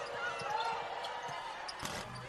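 Live basketball game sound: a ball being dribbled on the court in a run of faint knocks, over faint crowd voices in the arena.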